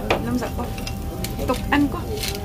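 Light clinks of chopsticks against a bowl at a restaurant table, a few sharp taps over a steady low room hum.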